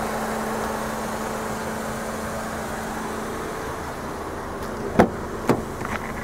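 A steady low hum, then two sharp clicks about half a second apart near the end: a car's driver door handle and latch being opened.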